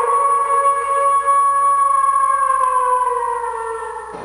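A wolf howl: one long, steady, pitched call that sinks slightly in pitch and fades near the end.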